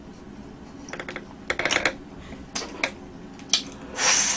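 Close-miked eating sounds of chocolate cake: a few short clusters of quick, sharp clicks. A louder, longer sucking sound starts at the very end as a small cake plate is lifted to the mouth.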